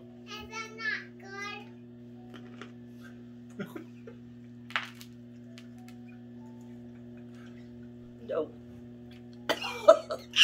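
A young child's high voice babbling briefly near the start, over a steady low electrical-sounding hum made of several even tones. A few faint sharp clicks follow in the middle, and there are short loud sounds just before the end.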